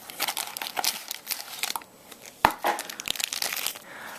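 Clear plastic packaging crinkling and rustling as a knife is unwrapped from it and pulled out of a small cardboard box, with one sharp click about two and a half seconds in.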